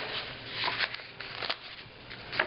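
Old paper booklets and loose sheets rustling and sliding against each other as they are handled, in a few soft, brief bursts.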